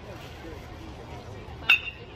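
Metal baseball bat striking a pitched ball about three-quarters of the way in: one sharp ping with a brief metallic ring, over low crowd murmur.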